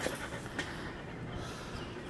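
A poodle panting quietly.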